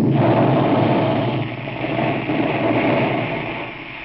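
Sound effect on an old radio recording: a loud, steady rumble, engine-like, that fades near the end.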